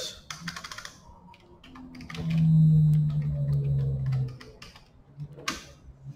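Computer keyboard keystrokes, a few quick clicks in the first second and a single click near the end, as a command is typed into a terminal. In between, the loudest sound is a man's drawn-out hesitant hum held steady for about two seconds.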